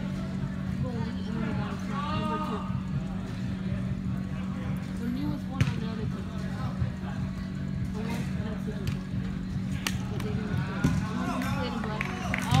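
Indoor soccer play: scattered players' voices and calls, with a few sharp ball kicks, the loudest about halfway through and shortly before the end, over a steady low hum.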